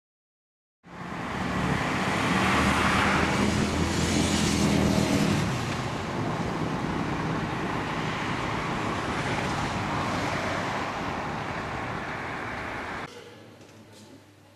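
Road traffic: a motor vehicle's engine running loudly close by for the first few seconds, then a steadier wash of street noise. It starts about a second in and drops suddenly near the end to a quiet indoor background.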